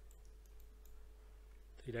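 A few faint computer mouse clicks near the start, over a steady low electrical hum; a man begins speaking near the end.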